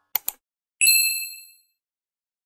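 Subscribe-button sound effect: two quick mouse clicks, then one bright, high bell ding that rings out and fades within about a second.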